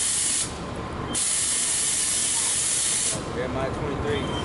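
Loud hissing in two bursts, the first lasting under a second and the second about two seconds, each starting and stopping abruptly.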